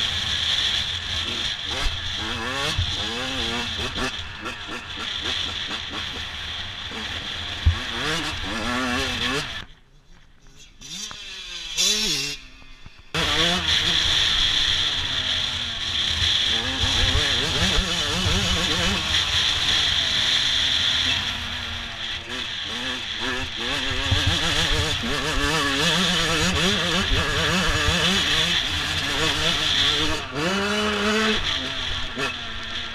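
Yamaha YZ 125 two-stroke motocross engine revving up and down as the bike is ridden over a rough track, heard from the rider's helmet with wind noise. About ten seconds in the engine sound drops away for around three seconds, then comes back suddenly at full volume.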